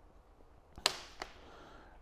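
Two sharp clicks from a hydraulic hose's metal end fitting knocking as the hose is handled: a loud one just under a second in and a fainter one shortly after.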